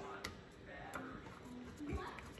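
A screwdriver threading a jet back into the top of a Kawasaki FE120 carburetor: a few faint small clicks, with a few faint short pitched notes now and then.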